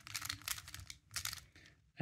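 Plastic Square-1 puzzle being turned by hand: quick runs of light clicks and clacks as its layers are twisted and sliced, thinning out near the end.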